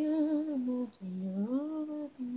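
Unaccompanied solo pop vocal, an isolated a cappella track: a held note with vibrato for about a second, a brief break, then a note that slides upward.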